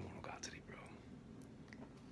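A man's faint breathing and soft mouth sounds, with perhaps a whispered fragment, in a pause between words, over quiet room tone.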